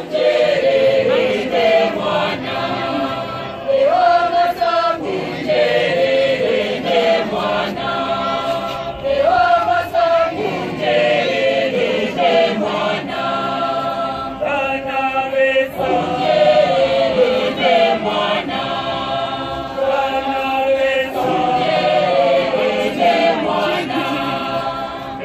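Large choir singing a Catholic hymn in harmony, in phrases a few seconds long, some opening with an upward slide.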